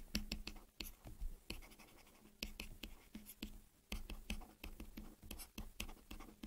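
Stylus tapping and scratching on a drawing tablet during handwriting: a faint, irregular run of quick clicks, broken by a couple of short pauses.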